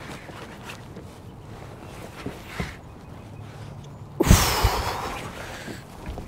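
A hooked schoolie striped bass is brought to the kayak on a baitcasting rod. Quiet at first with a few faint ticks, then about four seconds in a sudden loud splash and slosh of water with a couple of thumps, fading over a second or two as the fish thrashes at the surface.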